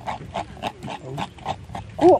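Spoon stirring thick millet mash (kinaa kya mwee) in a gourd bowl: quick repeated wet strokes, about five or six a second.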